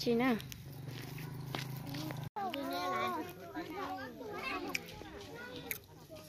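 A sung phrase ends just after the start, followed by a low steady hum; after a brief dropout about two seconds in, several adults and children talk over one another at an outdoor market.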